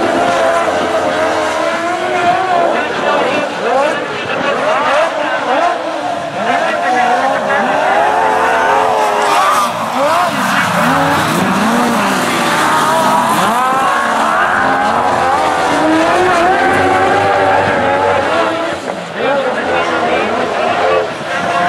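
Several speedway sidecar outfits' engines racing, their pitch rising and falling over and over as the riders work the throttles through the turns.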